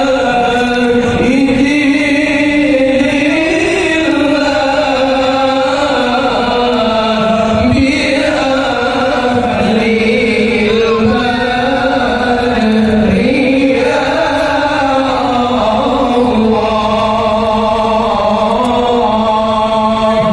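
Shalawat, devotional Islamic praise-singing, chanted in unison by a group of male voices, with long held notes that slide slowly up and down in pitch.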